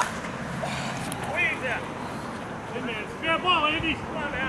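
A single sharp crack of a softball bat hitting the ball right at the start, followed by voices calling out in the distance.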